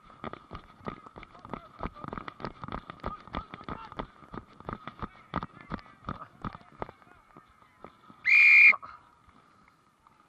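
Footfalls of a referee running on grass, thudding irregularly about three or four times a second, then one short, sharp blast of a referee's whistle about eight seconds in, the loudest sound.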